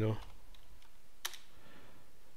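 Typing on a laptop keyboard: faint key taps, then one sharper click about a second in.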